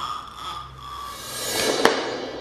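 A swelling whoosh that builds over the second half and ends in one sharp hit near the end, over faint background music: an editing transition sound effect.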